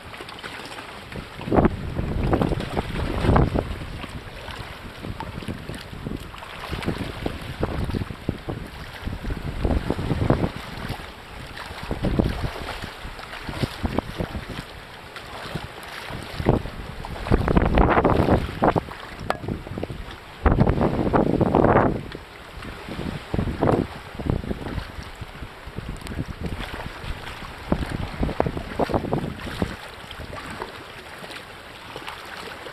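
Wind buffeting the microphone in irregular loud gusts, over a steady wash of sea water.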